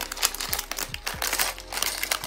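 Small printed plastic parts bag crinkling with rapid, irregular crackles as it is handled, opened and tipped up to pour out its contents.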